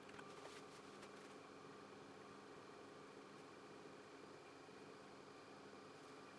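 Near silence: a faint, steady machine hum from the scanning electron microscope's vacuum pumps pumping the chamber down, with a few faint ticks in the first second.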